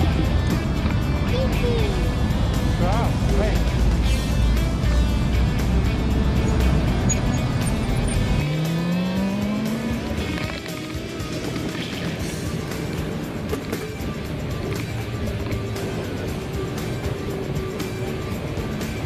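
Wind and road noise from a moving bicycle: a heavy low rumble that cuts off suddenly about halfway through. Background music plays over it, with a few short sounds from a small child's voice.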